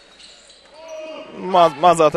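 Broadcast basketball game sound: a quiet moment of faint court noise, then a male commentator's voice starting about three quarters of the way in.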